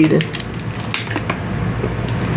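Thin plastic water bottle being handled and raised to drink from, with a string of light crinkles and clicks from the plastic.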